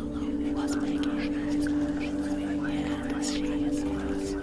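Soft whispering voices over a steady drone of held low tones.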